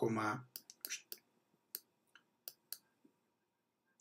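A string of irregular sharp clicks, about eight or nine over two seconds, from a stylus tapping and dragging on a tablet as a number is written.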